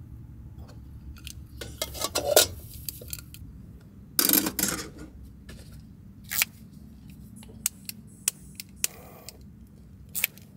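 Small metal tins and camp-stove gear handled on a wooden table: a few clicks and rattles, a louder scraping clatter about four seconds in, then several single sharp clicks.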